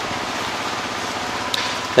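Steady background hiss with no clear source, with one faint click about one and a half seconds in.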